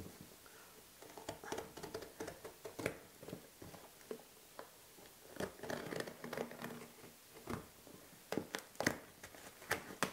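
Packing tape on a cardboard box being sliced with a utility knife, then torn and the cardboard flaps pulled open: an uneven run of scrapes, sharp clicks and crinkling.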